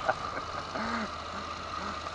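Motorcycle engine idling with a steady low hum, a faint voice briefly heard about a second in.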